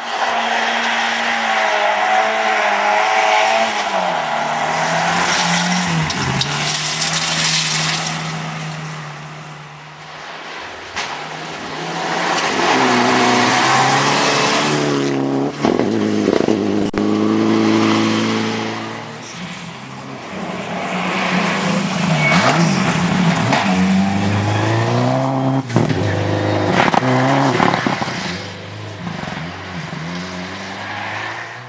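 Rally cars driven flat out on gravel special stages, one pass after another, the first a Volvo 240. Each engine revs up and drops through gear changes, with gravel and tyre noise loud at times.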